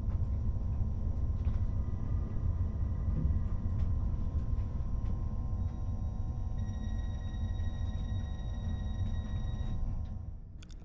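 Cabin noise aboard an SBB Giruno (Stadler SMILE RABe 501) electric high-speed train under way: a steady low rumble from the running gear and track. Faint high steady tones join about two-thirds of the way in.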